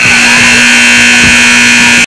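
Gym scoreboard buzzer sounding: a loud, steady buzz that starts suddenly and holds without a break.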